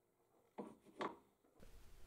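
Near silence: room tone, with two faint brief sounds about half a second and a second in.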